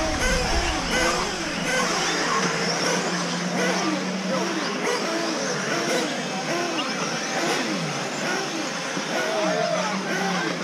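Several electric 1/8-scale RC off-road buggies racing, their brushless motors whining up and down in pitch as they accelerate and brake around the track, many overlapping at once.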